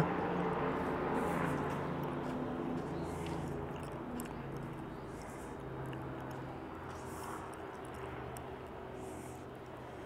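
A steady low mechanical hum over background noise, slowly getting quieter.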